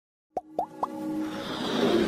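Intro jingle of an animated logo: three quick plops, each gliding up in pitch, then a swelling musical riser that builds toward the end.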